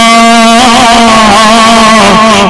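A man's voice holding one long, drawn-out note, its pitch steady with a slight waver about half a second in, as a preacher stretches out a word in a melodic, chanting delivery.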